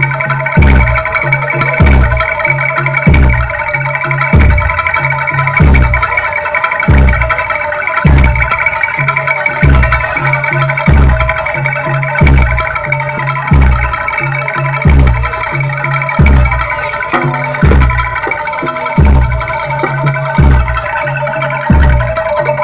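Javanese jaranan gamelan music played loud through PA speakers: ringing metallophones over a deep, steady beat that comes about every 1.3 seconds.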